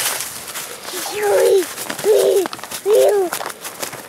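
A toddler's voice making three drawn-out calls, each rising then falling in pitch, about a second apart, with footsteps crunching on thin snow over dry leaves.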